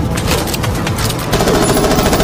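Rapid automatic gunfire from an action-film soundtrack, a fast stream of shots that gets louder about halfway through.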